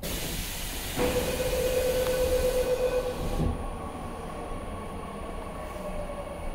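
A Seoul Metro Line 9 subway train running, heard from inside the car: a loud rushing noise that rises suddenly at the start. A steady electric motor whine runs from about a second in to about three seconds, then gives way to a duller, steady running noise.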